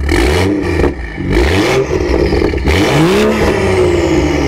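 Stage 2 tuned BMW M135i's turbocharged straight-six revved at standstill in about three quick blips, each rising and falling, heard from just behind the tailpipes with the exhaust set open. It is loud enough that the onlookers joke about the exhaust not being road-legal.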